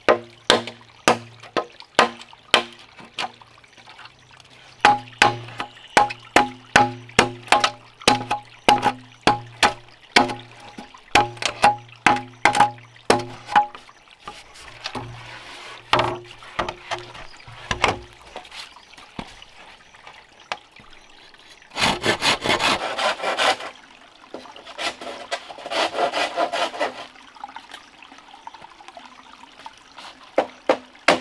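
A machete chopping into a green bamboo pole, about two blows a second, each with a short hollow ringing note from the pole; the blows thin out and stop about two-thirds of the way through. Two longer rasping, scraping stretches follow near the end.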